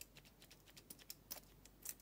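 Faint small plastic clicks and taps as a perfume sample vial and its clear plastic cap are handled and the vial is applied to the wrist. There are several light ticks, with two louder clicks near the end.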